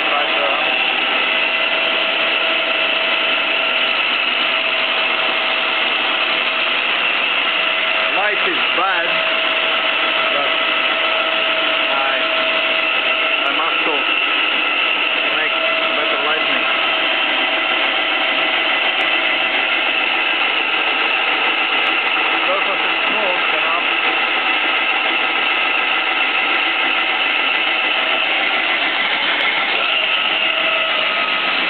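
Stanko 6R12 vertical milling machine running with its spindle turning: a steady mechanical hum with a whine of several steady tones from the drive.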